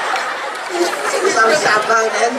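Speech only: performers talking into handheld microphones over a stage sound system.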